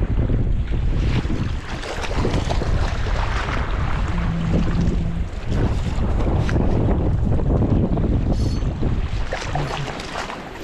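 Wind buffeting the microphone over the steady rush of a fast river current.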